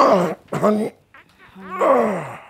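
A man groaning as he stretches out on a bed: a few drawn-out vocal groans, each sliding down in pitch.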